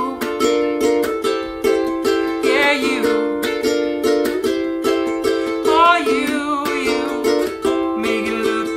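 Koaloha Opio concert long-neck ukulele strummed in a steady rhythm of about four strokes a second, chords ringing. A short wordless vocal line sounds twice over it, about two and a half seconds in and again near six seconds.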